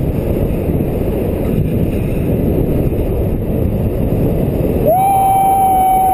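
Loud rushing wind on the camera microphone during a fast speed-wing glide. About five seconds in, a single steady high-pitched tone joins it and holds.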